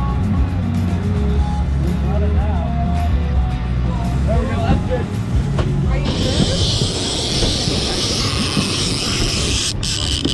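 Boat's outboard motor running with a low hum that dies away about four and a half seconds in. About six seconds in, a steady high-pitched buzzing hiss starts suddenly and holds: a fishing reel's drag paying out line as a hooked fish runs.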